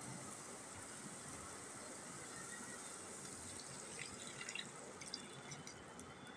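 Water being poured into a hot wok of lightly fried chicken pieces and carrots for soup, a faint steady watery sound with a few soft clicks near the end.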